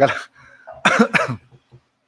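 A man laughing in two short bursts, about a second apart.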